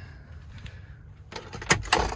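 Passenger-side glove box of a 2005 Chevrolet Silverado being opened by hand: some handling noise, then two sharp clicks of the latch and lid near the end.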